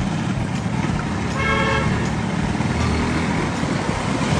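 A horn toots once, briefly, about a second and a half in, over a steady low rumble of street traffic.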